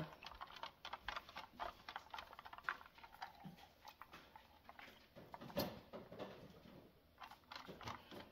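Faint, scattered small clicks and taps, with one louder click about five and a half seconds in.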